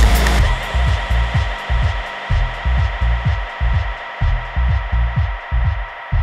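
Electronic dance music in a DJ mix going into a breakdown. The drums and hi-hats drop out just after the start, leaving a bassline of short notes that each slide down in pitch under a held high tone, while the treble is gradually filtered away.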